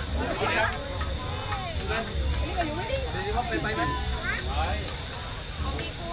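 People talking over the background noise of a busy street market, with a low rumble underneath and a few light clicks.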